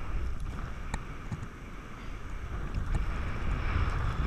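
Wind buffeting an action camera's microphone during a parasail flight: a steady low rush, with a faint click about a second in.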